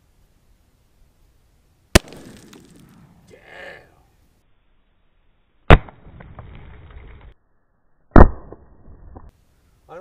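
.22 LR rifle shots at a CO2 cartridge target: three sharp reports, about two seconds in, near six seconds and about eight seconds in, each with a short decaying tail. The second and third sound duller and muffled.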